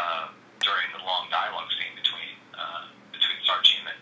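Speech only: a person talking in phrases with short pauses, the voice thin and cut off at top and bottom like sound over a telephone line.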